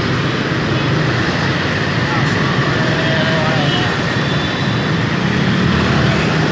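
Steady road noise of riding a motorbike through dense scooter traffic: engines running and wind on the microphone, with no single sound standing out.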